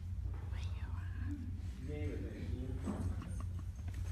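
Quiet murmured talk and whispering among the players over a steady low hum; the instruments are not being played.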